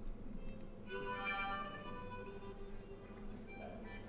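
Harmonica played close into a vocal microphone: a bright held chord starts about a second in, then eases into softer notes.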